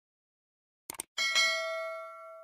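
Subscribe-button sound effect: a quick double click about a second in, then a bright bell ding that rings on and slowly fades.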